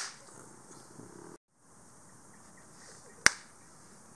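A rubber flip-flop slapped down hard on a concrete floor to swat insects: two sharp smacks, one at the very start and one about three seconds in.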